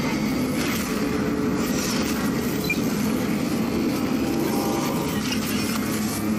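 Television station ident sound design: a continuous loud rumbling roar with faint whooshes under the animated logo.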